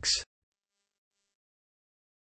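The end of a synthesized text-to-speech voice saying 'links', cut off within the first quarter second, then digital silence.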